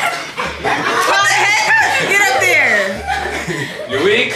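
Excited wordless yelling, squeals and laughter from several people in a playful scuffle.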